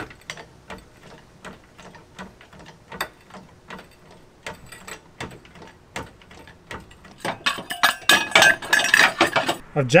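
Hydraulic floor jack being pumped to lift a van: a steady series of clicks, about two or three a second, louder and busier in the last few seconds.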